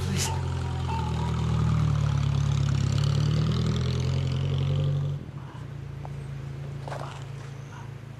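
Car engine running and pulling away, a low rumble that drops off suddenly about five seconds in.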